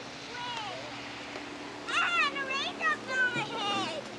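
A young child's high-pitched voice making calls or babble with no clear words: a short falling call early on, then livelier squealing sounds from about two seconds in.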